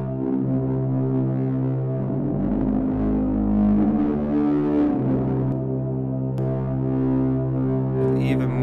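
Vienna Smart Spheres sound-design bass preset 'Uncontainable Anger' played on a keyboard: held, distorted low notes with a deeper note joining about two and a half seconds in for a couple of seconds. The notes pass through a saturator whose drive is being turned down.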